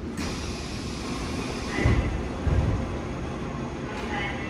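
Seoul Subway Line 5 electric train running through a tunnel, heard from inside the passenger car: a steady low rumble with hiss. About two seconds in come two louder low thuds less than a second apart.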